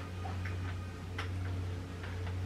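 A few soft, irregular clicks and taps from small objects being handled, over a steady low hum in the room.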